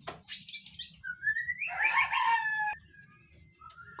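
Young male white-rumped shama (murai batu) singing one short phrase: a rising whistle that breaks into a burst of scratchy, chattering notes about one to three seconds in, followed by a faint short call near the end.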